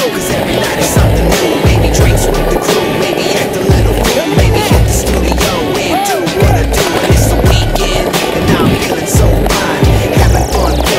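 Hip-hop track with a heavy, steady bass beat and synth lines, in a stretch without rapped vocals.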